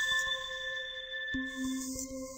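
Electronic chime tones of a sound logo: several clear, ringing notes held steady, with a lower note coming in about two-thirds of the way through and the highest notes fading out near the end.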